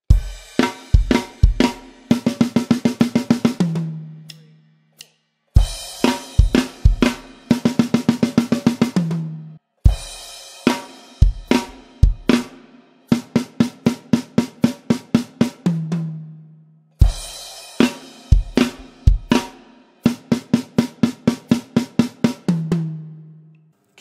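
Mapex Orion drum kit with Zildjian A cymbals played solo: a phrase of heavy bass drum and cymbal hits followed by a fast, even run of triplet strokes on the drums that ends on a lower-pitched tom, played four times with short gaps between.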